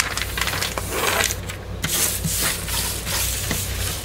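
A sheet of paper mold liner being creased and smoothed by hand on a wooden table: rustling and rubbing as the palms press folds into the paper and slide it across the wood, with a few soft taps.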